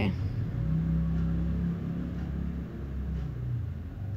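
A low motor rumble with a steady hum, setting in about half a second in and easing off near the end.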